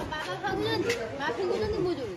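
Several people's voices talking over one another in indistinct chatter.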